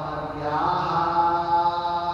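A man's voice chanting a devotional verse, rising about half a second in onto one long held note.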